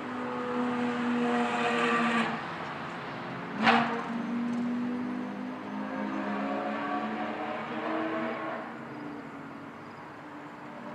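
Several go-kart engines running out of sight on the track, their pitches rising and falling slowly as the karts accelerate and ease off, fading near the end. A single sharp crack cuts through just under four seconds in.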